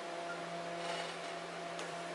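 Small A3 UV flatbed printer's platform drive motor carrying the print bed into the machine, a steady hum with a few held tones. A short click comes near the end.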